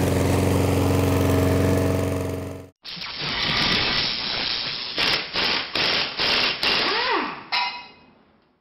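Gas push-mower engine running steadily, cut off abruptly about three seconds in. Then a logo sound effect: a rushing whoosh with a string of sharp hits and a swooping tone, fading out near the end.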